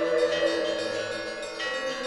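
Closing music: sustained chords with bell-like chime tones, the chord changing twice.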